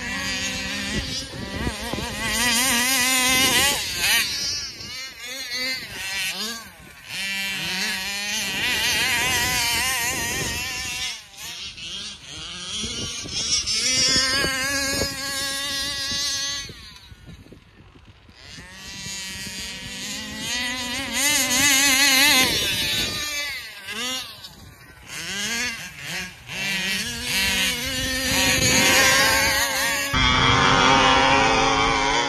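Gas two-stroke engines of large-scale RC cars revving up and down over and over as they are driven, the pitch rising and falling with each burst of throttle. The engines fall quieter for a moment about two-thirds of the way through, then pick up again.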